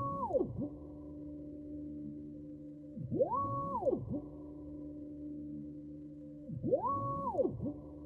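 Stepper motor driving a drylin linear axis back and forth under a dryve D1 controller. Three moves come about three and a half seconds apart; on each, the motor's whine rises in pitch as it speeds up, holds, and falls as it slows to a stop. Between moves there is a steady hum from the motor at standstill.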